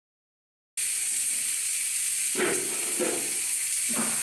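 Pressure cooker whistle: steam jetting from the weight valve in a loud, steady hiss that starts abruptly about a second in. It is the cooker's first whistle, the sign that the dal inside has come up to pressure.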